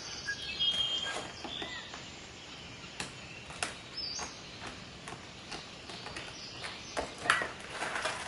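Light clicks, taps and rustles of painted card pieces being handled on a wooden frame tied with string, with a few brief faint high chirps.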